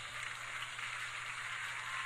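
Audience applauding: steady clapping of many hands.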